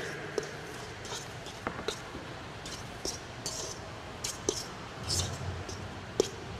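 Hands mixing ground pork and ground turkey in a stainless steel bowl: soft squishing of the meat with scattered light clicks and taps against the bowl.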